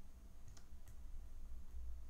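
A few faint clicks of a pen stylus tapping and writing on a drawing tablet, over a low steady hum.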